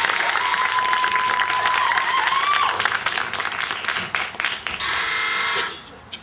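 A theatre audience applauding a finished song, with a long, mostly steady whistle over the clapping in the first half. A brief ringing tone comes near the end, and then the applause stops.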